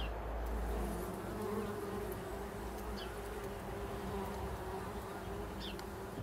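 Bumblebees buzzing at the entrance of their nest in a wooden bee box: a steady hum that wavers slightly in pitch.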